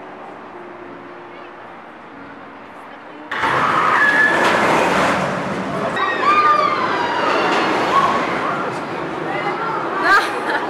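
Faint music, then, about three seconds in, a sudden loud burst of many people screaming at once: high, wavering screams over a rush of noise, as from riders on a drop-tower ride.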